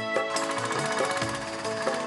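A three-wheeled tempo's engine running with a fast, even clatter that starts shortly after the beginning, under steady background music.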